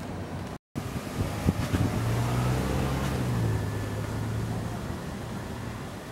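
A motor vehicle's engine going by on a narrow street, a low steady engine note that comes up about two seconds in and fades away after about five seconds, over general street noise. The sound drops out briefly just under a second in.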